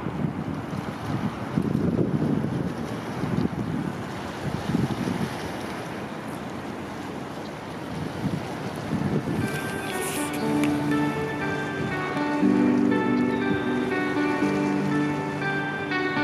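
Wind buffeting the camera's microphone outdoors, a low gusty rumble. About nine and a half seconds in, background music with a melody of held notes comes in over it.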